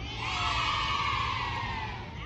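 A long, high-pitched scream or shout from a voice, held for about a second and a half and slowly falling in pitch.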